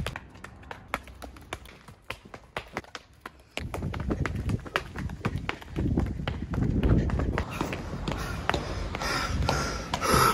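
Stiletto heels clicking in quick steps on a concrete slope as someone runs uphill in them. About a third of the way in a louder low rumbling noise joins the steps and carries on to the end.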